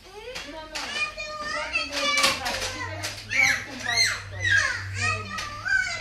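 Several young children's voices calling out and squealing over one another, high-pitched with rising and falling glides. There is a faint steady hum underneath.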